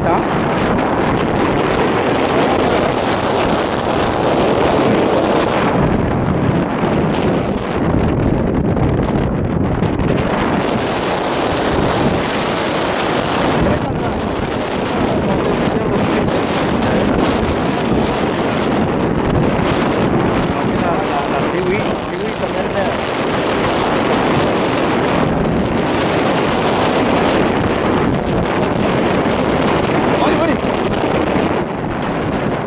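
Wind buffeting the microphone, a steady loud rush, over the wash of choppy sea.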